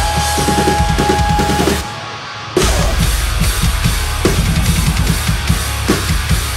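Acoustic drum kit played over a recorded metalcore song, with rapid kick drum, snare and cymbals under distorted guitars. About two seconds in, the music thins out and the low end drops away for about half a second, then the full band and drums come back in.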